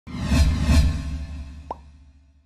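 A short musical sting for a title card: two loud, bass-heavy hits in quick succession with a fading tail, then a quick cartoon 'bloop' rising in pitch near the end.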